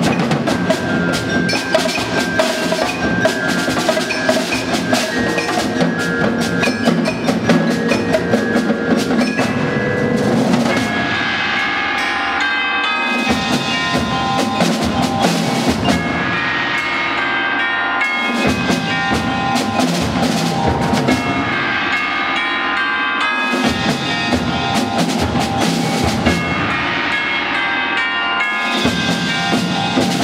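Percussion ensemble playing a concert piece: snare and concert drums strike densely under a mallet-instrument melody, and from about ten seconds in the music turns to ringing, sustained passages of tubular bells and mallet instruments that swell and fade in phrases of about five seconds.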